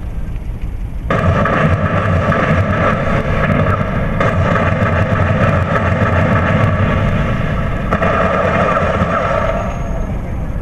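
Film soundtrack: a loud, dense sound-effect drone made of a low rumble and several steady tones. It starts abruptly about a second in and cuts off just before the end.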